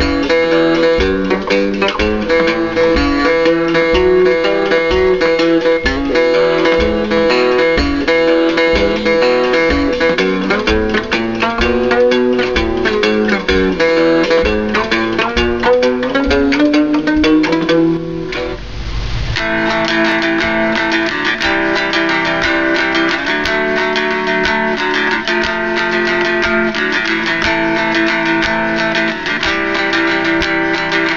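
Four-string fretless cigar box guitar playing a blues walking-bass riff, notes sliding in pitch between one another over a steady low pulse. About eighteen seconds in it breaks off with a short rush of noise, and a different cigar box guitar is strummed in chords.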